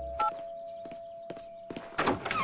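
A few footsteps crossing a wooden floor to the front door, while the last tone of a doorbell chime fades out.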